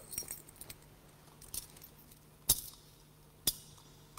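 Metal chains of a thurible (censer) clinking as it is swung, with sharp chinks about a second apart, the loudest two near the middle and end.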